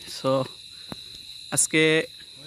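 Crickets chirping in a steady, high-pitched drone, with brief snatches of a voice just after the start and again near the end.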